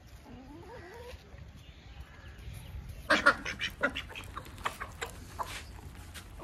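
Ducks quacking. A faint call comes early, then a quick run of short, loud quacks starts about halfway through.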